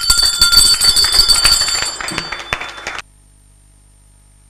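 Applause from a roomful of people, with a steady bell ringing over it. Both stop abruptly about three seconds in.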